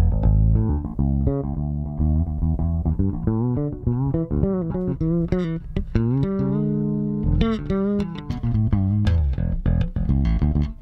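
Sire V7 Vintage five-string fretless electric bass played through an amp, in a run of notes that slide and waver in pitch. Its tone shifts as the pickup and tone knobs are turned during the playing.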